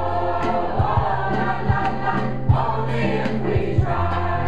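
A mixed choir of women's and men's voices singing together, accompanied by a steady bass line and regular drum hits.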